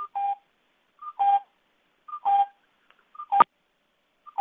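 Electronic two-note beep on a phone or conference-call line, a short higher tone and then a lower one, repeating about once a second, four times, the last the loudest. It cuts into the presenter's audio, which leaves her unsure whether she can still be heard.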